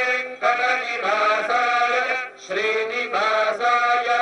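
Hindu devotional chanting in long held phrases, breaking off briefly twice.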